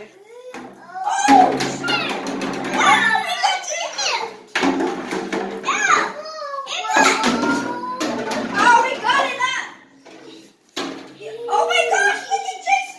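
Young children's high-pitched voices calling out and babbling in play, with a few sharp knocks in between and a brief lull about ten seconds in.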